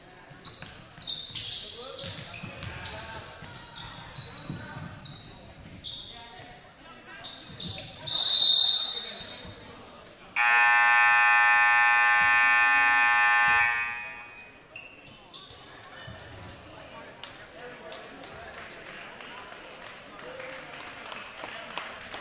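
Sneakers squeaking and a basketball bouncing on a hardwood gym floor, with a loud shrill note about eight seconds in. Then the scoreboard horn sounds one steady blast of about three seconds as the clock hits zero, ending the third quarter.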